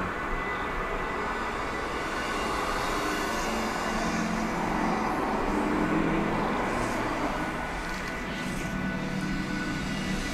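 A steady, blurred wash of a TV drama's soft background music and ambience, layered from many reaction videos playing the same scene at once.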